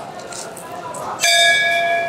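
A temple bell struck once about a second in, ringing on with several clear steady tones over quiet street noise.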